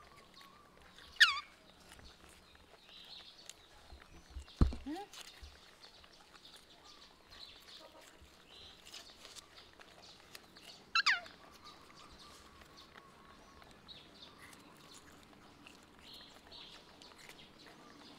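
Two short, high-pitched animal calls, each sliding steeply down in pitch, about a second in and again about ten seconds later. A sharp knock comes about four and a half seconds in.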